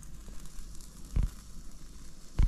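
A whole chicken sizzling as it roasts on the embers of an open wood-burning stove, with a light crackle of fire, and a dull thump just over a second in.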